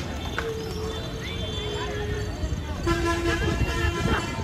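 Shouting human voices over a low rumble. One voice holds a long call from about half a second in, and a steady horn-like toot sounds for about a second near the end.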